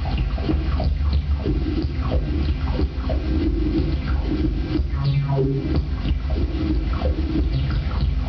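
Live electronic noise music played on synthesizers and patched electronics: a dense, steady low rumble with irregular short crackles and sputters over it.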